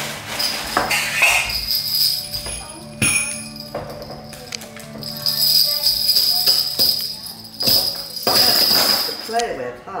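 Jingle-bell shaker toy shaken in irregular bursts, jingling loudest in two stretches in the latter half, with people talking over it.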